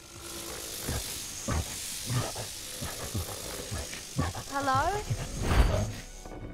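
Film soundtrack: a steady hiss with scattered soft low thumps, a short voice-like call that rises in pitch about four and a half seconds in, and a louder low rumble near the end.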